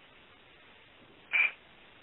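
Faint steady hiss in a pause of speech, with one short hissing sound about a second and a half in.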